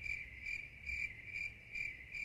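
Cricket chirping sound effect: a steady high trill pulsing about two and a half times a second, the comic cue for an awkward silence.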